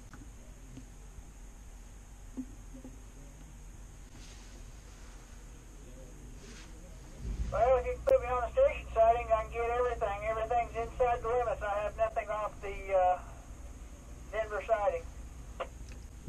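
A man's voice coming over a two-way radio speaker, thin and telephone-like, answering a radio call; it starts about seven seconds in with a low hum under it, after several seconds of quiet room tone.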